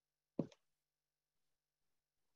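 Near silence on a video-call audio line, broken by one short pop about half a second in.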